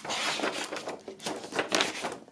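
Paper record sleeve rustling and scraping against a vinyl LP as the record is worked back into it, in uneven strokes, with a longer one at the start and another near the end.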